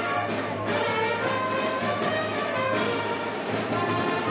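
Brass band music playing continuously, horns carrying the tune over a steady low beat.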